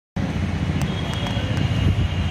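Steady outdoor street noise with a heavy low rumble of traffic, cutting in abruptly just after the start.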